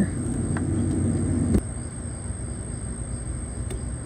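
A steady low rumble with a thin high whine over it. A single sharp click comes about one and a half seconds in, after which the rumble is quieter.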